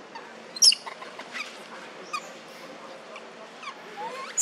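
Infant macaque calling: one sharp, very high-pitched squeal about half a second in, then a string of shorter, fainter sliding squeaks. These are distress calls from an infant trying to nurse.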